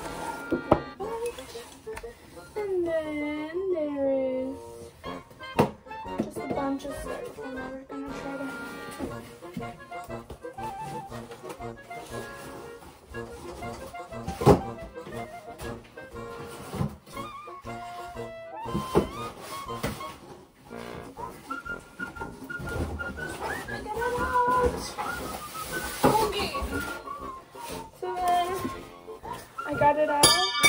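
Background music playing throughout, with occasional sharp knocks from handling.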